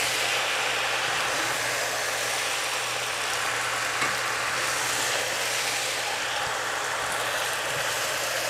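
Chow mein noodles, chicken and vegetables sizzling steadily in a hot stainless hybrid wok as they are tossed with wooden spatulas, over a constant low hum.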